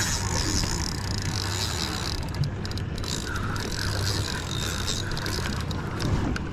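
Spinning reel's drag clicking as a hooked mahi-mahi pulls line off the spool.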